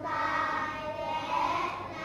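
A class of young children reading Thai text aloud in unison, with long drawn-out syllables in a chant-like choral recitation.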